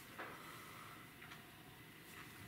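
Faint chewing of a crunchy chili pepper pod, with a couple of soft crunches near the start and again past the middle.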